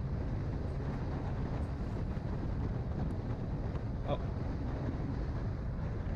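Steady wind and road noise recorded by a camera on a vehicle travelling at highway speed: a low, even rumble with wind buffeting the microphone.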